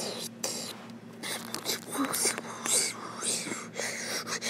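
A person whispering close to the microphone: a run of breathy, hissing bursts with no clear voiced words.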